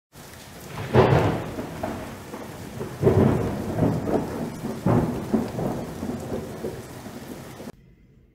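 Thunder and rain: three rolling thunder rumbles about two seconds apart over a steady hiss of rain, cutting off abruptly near the end.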